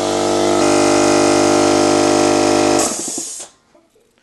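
Small electric air compressor running with a steady motor hum, then winding down and stopping about three seconds in.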